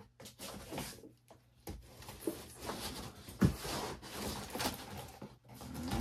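Cardboard shipping box being pulled open by hand: scattered clicks, then a run of rustling and scraping from the flaps and packing, with one loud thud about three and a half seconds in.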